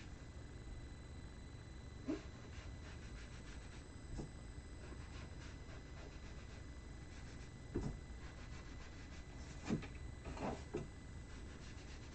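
Faint rubbing of a sponge dabbing black ink onto the edges of a cardstock panel, with a few soft taps as it meets the card and mat.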